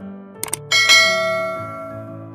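Two quick clicks, then a bright bell-like ding that rings out and fades over about a second: the click-and-notification-bell sound effect of a subscribe-button animation, over soft background music.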